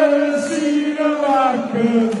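Men singing a football chant in long held notes that step down in pitch, with the next line, "Have you...", starting near the end.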